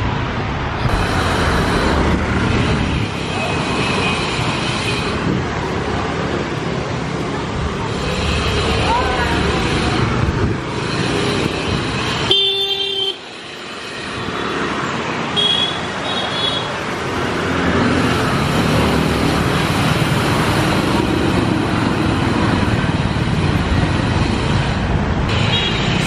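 Busy street traffic: motorbike and car engines running past, with short horn toots, one just before halfway and another a few seconds later. The noise drops off suddenly about halfway in, then builds back up.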